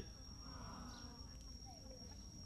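Faint outdoor background during a pause in a talk: a thin, steady high-pitched whine runs throughout, with a few faint short chirps.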